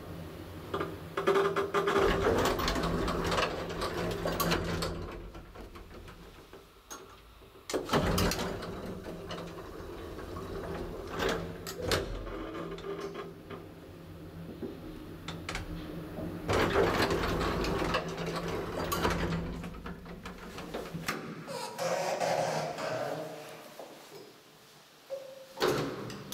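1960 Schindler traction elevator travelling: a steady low machine hum with recurring rattling of the car and its doors and a few sharp clicks. The hum stops about 21 seconds in as the ride ends, followed by a short rumble and a sharp clack near the end as a hinged landing door is pushed open.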